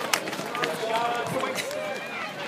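Spectators' voices chattering and calling out along the finish straight of a running track, with the last sprinter's quick footfalls at the very start, then mostly voices.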